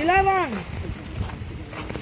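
A person's voice: one drawn-out call, rising and then falling in pitch over about half a second, followed by faint background chatter.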